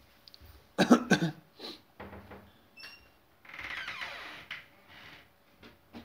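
A person coughing twice in quick succession about a second in, followed by a few softer sounds and a hiss lasting about a second near the middle.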